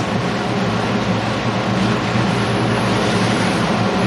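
Steady loud hiss with a low hum underneath, the background noise of a lab recording of a mouse in its cage played back during a talk; it cuts off abruptly at the very end.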